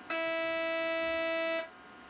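A single steady warning tone, about a second and a half long, starting and stopping abruptly, heard inside an electric locomotive's cab.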